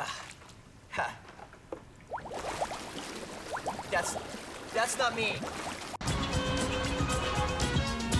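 Water sloshing and splashing around a person wading in a swimming pool, with a short vocal sound about a second in. About six seconds in, this cuts off abruptly and music starts.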